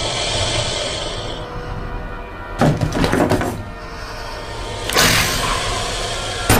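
Horror film soundtrack music: a high, hissing swell, broken by sudden loud crashing hits about two and a half seconds in and again about five seconds in.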